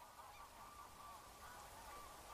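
Faint chorus of waterfowl calls: many short, overlapping honks.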